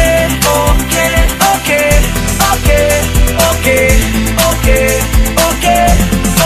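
Rhythm-and-blues pop song playing in an instrumental stretch with no singing. It has a steady kick-drum beat of about two thumps a second, a bass line and a short repeating melody.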